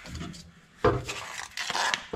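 Handling noise: a sudden knock about a second in, followed by about a second of rubbing and scraping.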